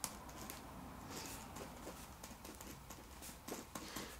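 Ballpoint pen writing letters on a sheet of paper: faint, irregular scratching and small ticks of the pen on the page.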